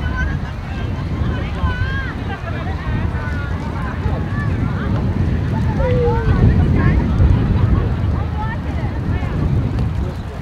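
Wind buffeting the microphone with a heavy low rumble, under scattered distant shouts and calls from players and spectators, with one louder falling call about six seconds in.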